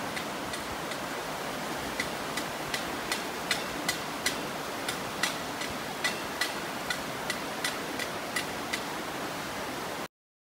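Canal water rushing through a sluice and over a weir, a steady roar of water. Over it, sharp clicks come about two to three times a second, unevenly spaced.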